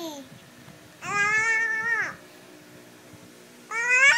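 Baby squealing: one high-pitched held squeal of about a second, then a second squeal near the end that rises and falls in pitch.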